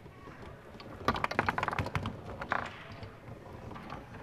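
Foosball play: a quick run of sharp clicks and clacks from the ball being struck and passed by the plastic men on the rods, starting about a second in, then a single louder knock.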